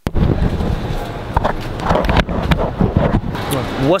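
Wind and handling noise rumbling on a handheld camera's microphone, with indistinct voices in the background and a voice starting at the very end.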